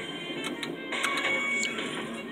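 Electronic music and sound effects from a pirate-themed skill game machine during its pick-a-coin bonus round. A held tone sounds about a second in as a coin is tapped and a win is revealed, over a steady noisy background.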